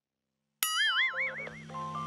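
A cartoon 'boing' sound effect bursts in after a short silence, its pitch wobbling up and down for about a second. Children's background music then comes back in under it.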